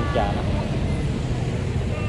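A steady low outdoor rumble runs under a brief word from a woman's voice at the start.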